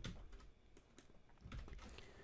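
A few faint computer keyboard key clicks, scattered over the two seconds against near silence.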